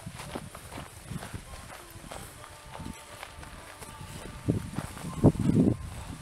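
Footsteps of a hiker on a sandy, gravelly dirt trail: irregular scuffs and thumps, heaviest and loudest near the end.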